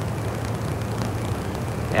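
A steady low hum with hiss, the constant background noise under a recorded interview's soundtrack.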